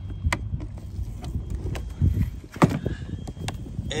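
Scattered light clicks and knocks over a low rumble, with a brief pitched squeak about two and a half seconds in.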